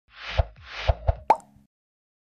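Logo-intro sound effects: two swelling whooshes, each ending in a low thump, then a third thump and a quick upward-sweeping pop.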